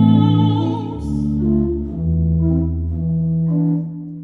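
A woman's voice with vibrato finishes a sung phrase about a second in, over a Ratzmann pipe organ. The organ then plays on alone in sustained chords that move in steps, low and middle in pitch.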